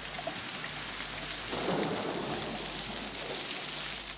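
Heavy rain pouring steadily, with a swell of low rolling thunder around the middle.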